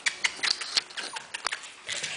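Irregular quick clicks and taps, about a dozen in two seconds, from small Havanese puppies' claws on a hardwood floor as they scramble about.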